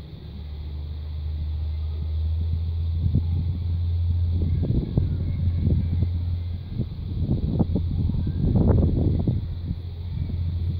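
Wind buffeting the camera microphone: a steady low rumble with irregular gusts that grow stronger through the second half.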